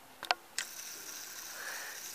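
Handling noise from a handheld camera: a couple of sharp clicks about a quarter-second in, then a steady hiss.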